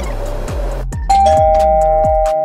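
Background music with a low beat, breaking off briefly about a second in. A loud two-tone ding-dong chime then rings, a higher note followed at once by a lower one, both held.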